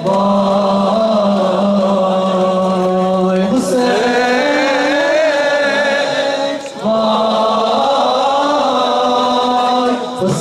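Male voices chanting a Muharram noha lament in long, held, sliding notes, with a short break between phrases about seven seconds in.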